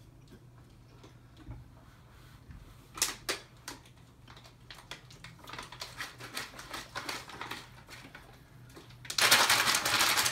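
Dry saltine crackers crunching as they are handled and chewed: sharp clicks, then scattered crackle, ending in a loud, dense second-long burst of crunching as a cracker is bitten into.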